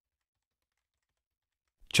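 Silence, then a narrator's voice begins near the end.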